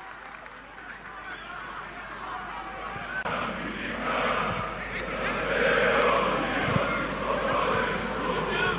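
Football stadium crowd: a dense noise of many voices that swells from about three seconds in.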